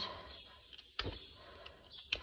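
Hoof knife paring the sole of a horse's hoof: a few short scrapes and clicks, the sharpest about a second in.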